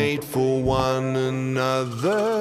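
Progressive rock music: a long held sung note over the band's sustained chords.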